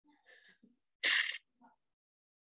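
A person's faint intake of breath, then one short, muffled, breathy burst about a second in.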